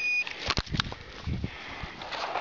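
Electronic orienteering control unit giving one short high beep as the runner's card is punched, confirming the punch. A few knocks and rustles follow.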